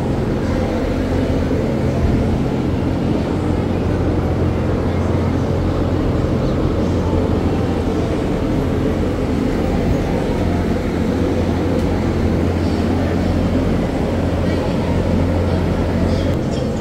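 A steady low mechanical hum, as of a running engine, with indistinct voices of people over it.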